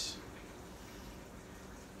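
Quiet, steady background noise of a kitchen (room tone), with no distinct sound events.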